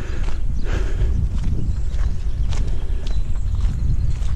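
Footsteps of a person walking on a park path, roughly one step a second, over a steady low rumble of noise on the camera's microphone.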